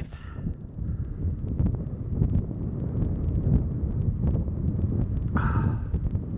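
Wind buffeting the microphone: a steady low rumble. A brief higher-pitched sound cuts in near the end.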